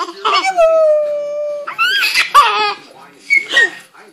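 Baby squealing with delight: one long held high squeal falling slightly in pitch, then a higher, wavering shriek of laughter, and a short squeal near the end.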